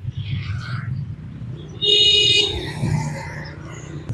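Road traffic passing with a low, steady engine rumble; a vehicle horn sounds briefly about two seconds in.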